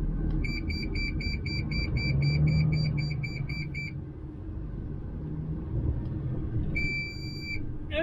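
DAF XF truck's blind-spot warning buzzer beeping rapidly, about four high beeps a second for some three and a half seconds, then one longer beep near the end. It is set off by roadside bushes on the nearside. The truck's engine and road rumble run low underneath.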